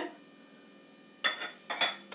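A quiet first second, then a short scrape and a sharp metallic clink of kitchen utensils near the end, as a little cooking oil is taken up onto the hand.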